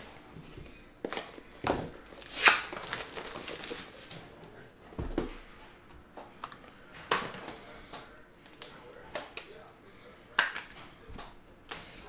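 Plastic card sleeves and top loaders being handled: scattered crinkles and light clicks, the loudest about two and a half seconds in.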